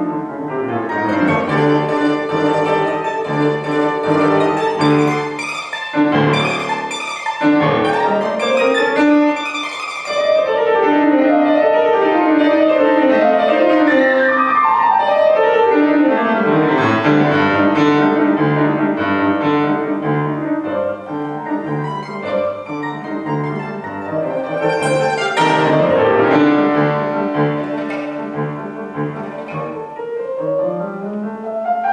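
Mandolin and grand piano playing a classical duet, the mandolin plucked and tremoloed over a busy piano part. In the middle, for a while, the mandolin rests and the piano plays alone.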